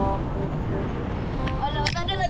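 Steady low rumble and wind buffeting on the microphone from a fast-spinning amusement ride car, with a woman's voice breaking in near the end.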